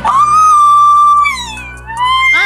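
A woman's long, high-pitched squealing cry that rises quickly, holds one steady pitch for about a second, then slides down and fades. Faint background music runs underneath.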